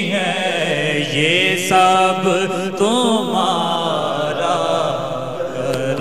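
A male voice singing an Urdu naat (devotional song in praise of the Prophet) into a microphone, drawing out long, wavering ornamented notes without clear words.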